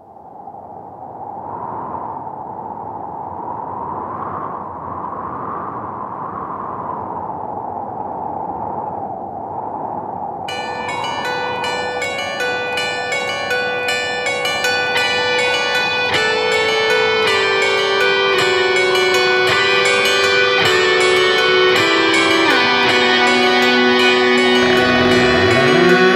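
Song intro: a soft, hazy swell rising in waves. About ten seconds in, a bright plucked string instrument comes in suddenly with a fast repeating figure. From about sixteen seconds a lower line steps downward under it, and the music grows steadily louder.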